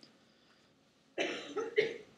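A person coughing, starting just over a second in.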